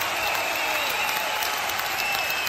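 Recorded crowd applause in a radio station jingle: a steady wash of clapping with a thin high whistle running through it.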